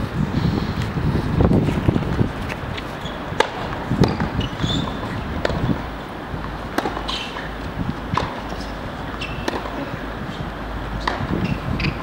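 Tennis rally on a hard court: sharp racket strikes and ball bounces about once a second, over wind noise on the microphone.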